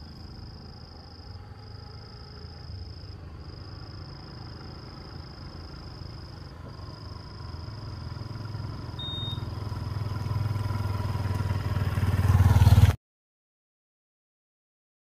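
A vehicle engine rumbling low and growing steadily louder as it comes closer, then cutting off suddenly near the end. A steady high insect buzz with a few short breaks runs above it.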